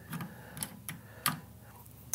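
A few light, sharp clicks and taps, four or five in two seconds, from a screwdriver and metal valve parts being handled on a cutaway espresso machine.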